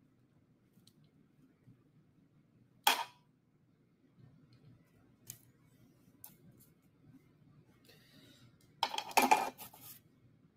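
Kitchen utensil handling: metal tongs and a skillet clack, with one sharp click about three seconds in, a few light ticks, and a louder clatter of several knocks near the end, over a faint low room hum.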